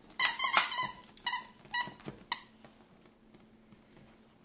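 Squeaker in a plush toy squeaked over and over as a small dog bites down on it. There is a quick run of high squeaks in the first second, then three single squeaks about half a second apart.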